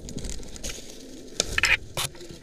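Rustling and scraping of birch twigs, bark and clothing as a person hanging on a rope brushes against a birch trunk. There are a few sharp crackles of twigs about one and a half seconds in.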